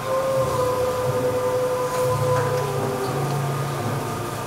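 Stage play's background score: long held droning tones, the main note dipping slightly in pitch past the midpoint, over a low pulsing bass that swells and fades about once a second.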